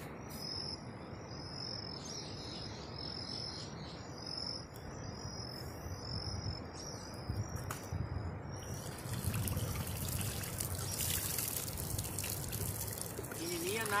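Water trickling and splashing as a plastic bottle fish trap is lifted out of the river and drains, building from about nine seconds in. Before that, short high chirps repeat about once or twice a second.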